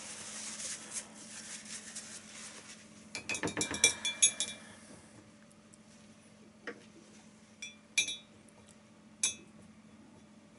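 Soft rustling of tissue paper, then a quick run of small glassy clinks about three seconds in, followed by four single clinks spaced out through the rest: a hard painting tool knocking against glassware on the desk.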